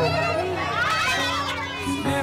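Children's voices chattering and calling out over background music.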